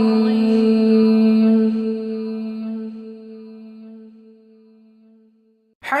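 A chanting voice holds one long, steady note that slowly fades away over a few seconds. After a brief silence, a new chanted phrase begins right at the end.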